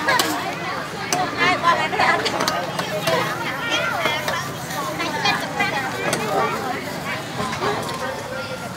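Market chatter: several people talking close by, over a background hubbub of voices.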